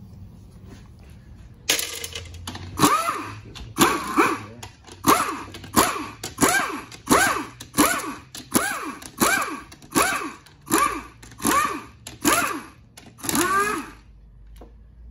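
Pneumatic ratchet run in short repeated bursts, about fifteen in a row, each spinning up and back down in pitch, as it backs the bolts out of a GM 4L60E transmission's valve body.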